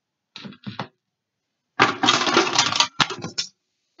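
Small toys clattering against each other and the metal sides of a tin case as a hand rummages through it. There are two soft knocks at first, then a louder clatter from about two seconds in that lasts around a second and a half, with one sharp knock in the middle.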